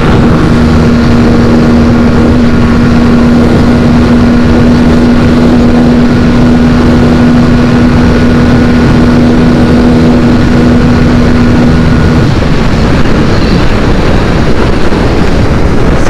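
Aprilia RS 457 parallel-twin engine held at high revs in fifth gear near its top speed, a steady high note under heavy wind rush. About twelve seconds in, the engine note falls away as the bike rolls off and slows.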